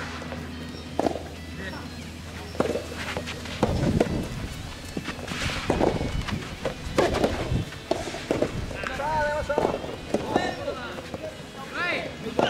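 Soft tennis rally: a rubber ball is struck by rackets with sharp pops every second or two, among players' footsteps on the court. Players shout out loud about nine seconds in.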